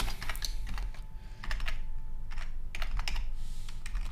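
Typing on a computer keyboard: sharp key clicks in a few short runs of keystrokes with brief pauses between them.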